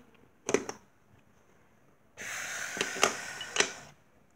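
Hard plastic Lego pieces clicking twice, then about a second and a half of scraping rattle with clicks as a small Lego cart is handled and pushed along a plastic window track.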